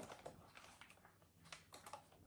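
Faint, scattered light clicks and taps as soy wax candles are pushed out of a silicone mold, most of them in the second half.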